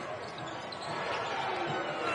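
Live basketball game sound in an arena: a steady wash of court and crowd noise with a ball bouncing on the hardwood.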